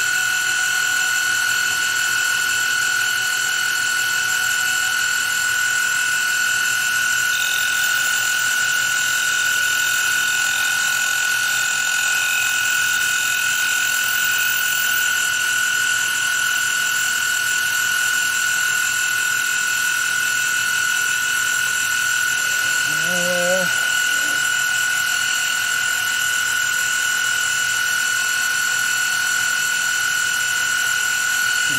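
Milling machine running with a steady high whine while taking light skim cuts across an aluminium connecting rod's big end. The whine holds even all through, with one brief low pitched sound about 23 seconds in.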